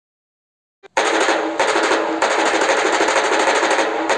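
Music opening with a fast, continuous drum roll that starts suddenly about a second in, after silence.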